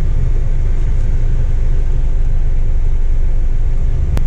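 Inside a moving car's cabin: a steady low rumble of engine and road noise while driving.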